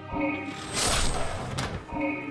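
Game-show 'guillotine' sound effect with a musical sting: a loud noisy swoosh of about a second in the middle, marking the halving of the prize money.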